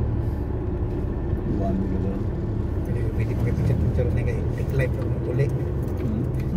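Steady low rumble of a car's engine and tyres heard from inside the cabin while driving, with voices talking over it.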